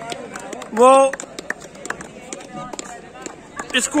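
Scattered, irregular hand claps from a line of players, under a man announcing in Hindi.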